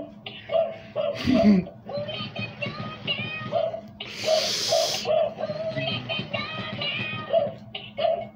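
Gemmy animated plush prisoner dog playing its short Halloween song through its small built-in speaker: tinny music with synthetic sung vocals while its ears flap. A burst of noise comes about four seconds in.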